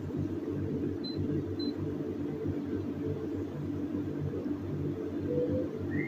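Steady low background hum of room noise, with two faint short high beeps about a second in.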